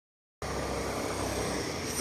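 Steady street noise of passing road traffic, a continuous hiss with a low rumble, starting suddenly about half a second in.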